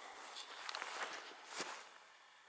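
Footsteps and rustling in frost-covered dry grass, with a few sharp crackles.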